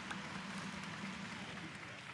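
Steady ice-arena crowd noise, an even wash with faint applause, easing off slightly.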